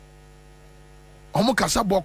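Steady electrical mains hum. About a second and a half in, a loud voice breaks in over it.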